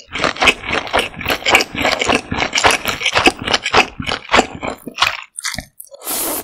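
Cold noodles being slurped up from their broth close to the microphone: a quick run of short wet sucks that thins out near the end.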